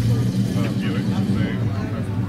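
A motor vehicle engine idling steadily, a constant low hum, with voices chattering in the background.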